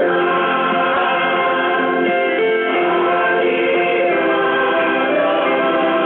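Gospel praise song: a choir singing held notes over musical accompaniment.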